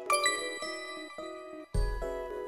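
A short musical jingle: a sparkling bell-like chime rings out at the start over held chord tones, and a deep low hit comes in near the end.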